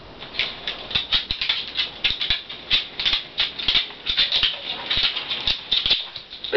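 A pug moving about in its harness, making a rapid, irregular rattle of sharp clicks.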